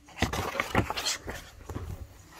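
An Alilo talking pen's small speaker plays a breathy animal sound effect: a quick, irregular run of puffs lasting most of two seconds.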